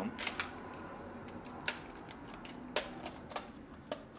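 About half a dozen sharp, irregularly spaced clicks and clacks of a Polaroid SX-70's plastic and metal film door and film being handled as the film is taken out by hand.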